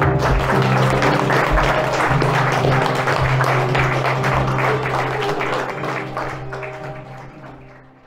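Audience applauding over background music with long held notes. Both fade out over the last couple of seconds.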